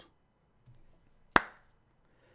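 A single sharp, loud click about halfway through, with faint room tone before and after it.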